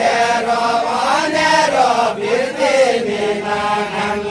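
Men's voices singing deuda, the unaccompanied folk song of far-western Nepal, in long held notes that slowly glide up and down.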